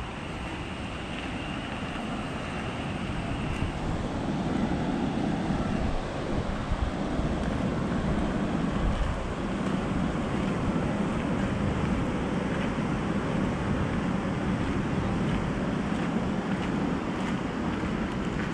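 Wind buffeting the microphone over the steady rush of river water pouring over a weir, growing louder about four seconds in.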